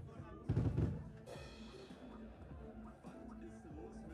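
Rock drum kit played briefly on a live stage: a loud burst of drum hits about half a second in, then a cymbal crash that rings out and fades. Quieter scattered stage sounds follow.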